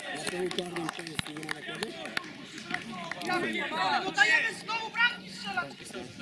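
Footballers' voices shouting and calling to each other on the pitch, loudest in the second half. There are a few sharp knocks in the first couple of seconds.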